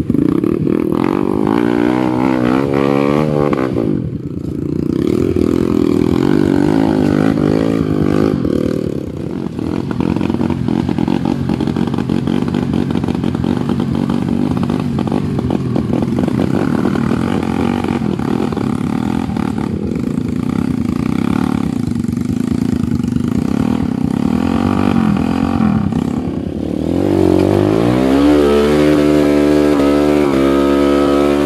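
Dirt bike engines revving up and down again and again as the bikes work up a muddy trail. Near the end a closer engine revs up loudly.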